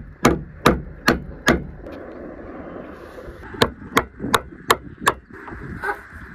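Hammer striking a steel putty knife driven under a solar panel's mounting foot on the trailer roof, prying off a foot that is only glued down with no fastener. The sharp metal blows come in two runs of about five, two to three a second, with a pause of about two seconds between.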